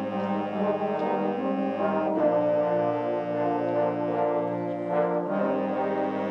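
High school concert band playing slow, sustained chords with the brass to the fore, moving to a new chord twice.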